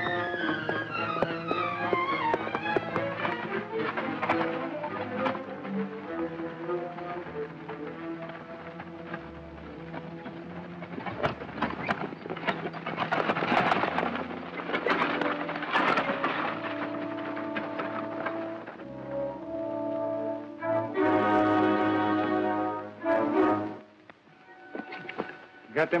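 Dramatic background film score with held chords and sharp accents, cutting off shortly before the end.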